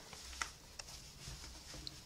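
Faint rustle of a patchwork fabric organizer being folded and smoothed by hand, with a couple of small clicks, the clearest a little under half a second in.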